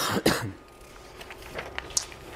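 A man coughs twice into his hand, short and harsh, then a few faint small clicks follow near the end.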